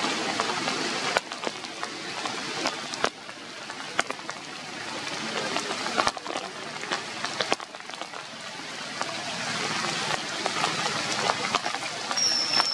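Rain falling steadily, an even hiss with irregular sharp taps of single drops.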